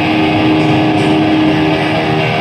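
Ska punk band playing live and loud: saxophone, trombone and trumpet over electric guitar and drums, with one long note held steady.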